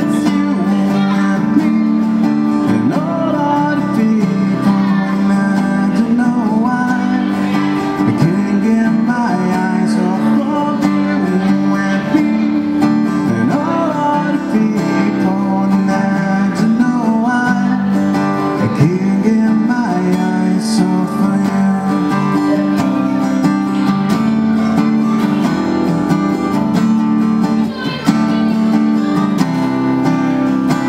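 A man singing live to his own strummed acoustic guitar.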